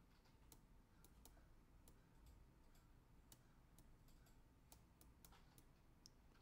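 Near silence broken by about a dozen faint, irregular clicks from a stylus tapping on a pen tablet as numbers are handwritten.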